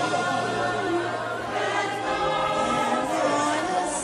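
Many voices singing together in chorus, a steady choral song with no pauses.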